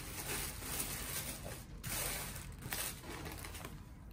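Tissue paper and plastic packaging rustling and crinkling in irregular bursts as a box is unwrapped by hand.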